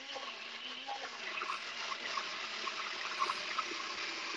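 Nutribullet Pro 900-watt personal blender running steadily, churning a thick mix of Greek yogurt, cream cheese and cocoa powder.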